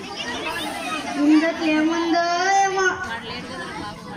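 A child's voice over a stage microphone and loudspeakers, speaking and then drawing out one long held syllable about a second in, with crowd chatter behind.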